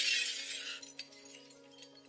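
A noisy crash-like sound effect that dies away within the first second, over sustained background music, followed by a few faint light ticks.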